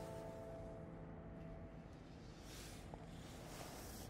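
Faint brush pen strokes on paper, brief soft scratches as a quick horizontal line is drawn. A few held background-music notes fade out over the first two seconds.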